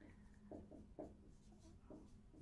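Faint short strokes of a marker writing on a whiteboard: a few quick strokes about half a second and one second in, and another near the end.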